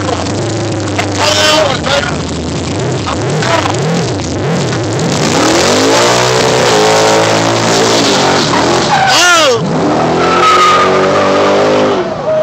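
Car doing a burnout: the engine revs hard and holds at high revs while the tyres squeal. The revs drop sharply about nine seconds in, then climb again.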